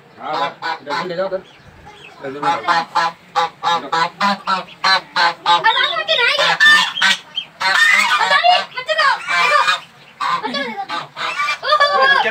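Domestic geese honking loudly and repeatedly, several short calls a second with brief lulls: agitated calls of parent geese guarding their goslings as a person comes close.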